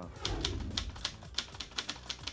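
Typewriter keystroke sound effect clacking irregularly, about six keys a second, as on-screen text is typed out, over a low rumble in the first second.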